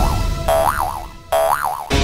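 Cartoon spring 'boing' sound effects, twice, each a quick wobbling rise and fall in pitch, over background music that briefly drops away between them.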